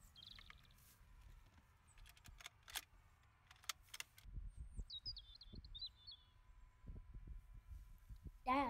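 Very quiet scene with a bird calling: a short high chirp near the start, then a longer stepped, falling call in the middle. A few sharp clicks come about two to four seconds in, and low thuds follow as a rifle and gear are handled.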